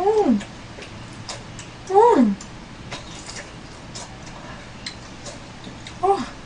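A cat meowing twice, about two seconds apart; each meow is short and falls in pitch. Faint clicks run underneath.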